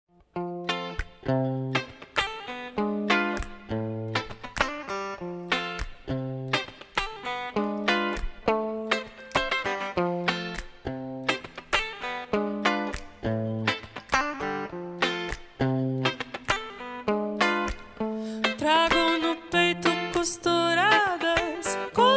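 Band intro played live: an electric guitar picks a repeating pattern of single plucked notes in an even rhythm over a bass guitar. A singing voice comes in near the end.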